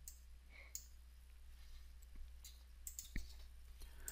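A few faint, scattered clicks of a computer mouse, one near the start and a small cluster about two and a half to three seconds in, as the Save button in a file dialog is clicked, over a quiet room with a low steady hum.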